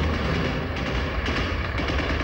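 A steady low rumble with an even noisy hiss over it.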